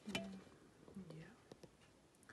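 Quiet, murmured speech only: a short "mm" at the start and a "yeah" about a second in, with a few faint clicks.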